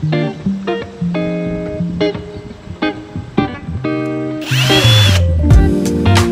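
Light plucked-guitar music plays throughout. About four and a half seconds in, a power drill runs briefly, its motor whine rising and then falling, as screws are driven to assemble a wooden side table.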